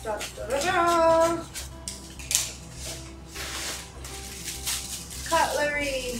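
Paper and plastic packaging rustling and crinkling as a plastic-wrapped cutlery set is pulled out of a padded mailer, with a few light clicks, over soft background music. A brief voice sounds near the start and again near the end.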